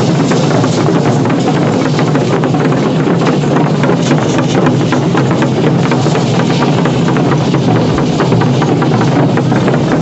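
Dense, steady clatter of many cocoon leg rattles and belt rattles worn by masked fariseo dancers as they walk in a crowd, with drumming underneath.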